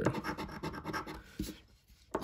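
A metal coin scratching the latex coating off a scratch-off lottery ticket in a quick run of short strokes, stopping about one and a half seconds in.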